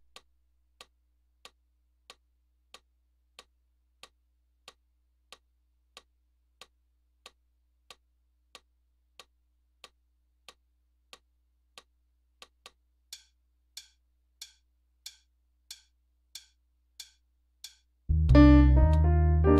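Faint metronome clicking steadily at about 92 beats a minute over a low electrical hum; a little past two-thirds of the way through, the clicks grow louder and brighter.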